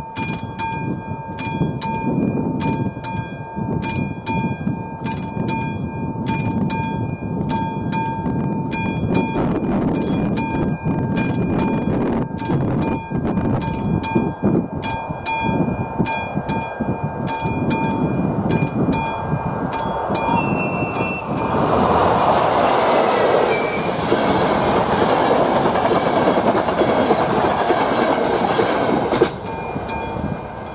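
Level-crossing warning signal sounding, a pulsing steady tone with regular clicks. About two-thirds of the way in, a regional express train passes over the crossing with loud rushing wheel noise for about eight seconds, which cuts off abruptly near the end.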